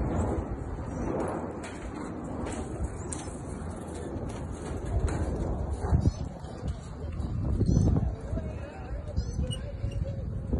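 Outdoor noise with uneven rumble from wind and footsteps on a cable suspension bridge, swelling a few times. Birds chirp briefly now and then.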